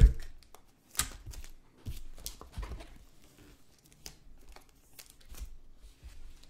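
A sharp knock on the table, then trading-card packaging being torn open and crinkling in short irregular bursts as the cards are handled.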